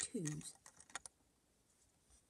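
Plastic Lego bricks clicking as a yellow 2x2 brick is handled and pressed into place on the build. The clicks come as a quick run of several small ones in the first second.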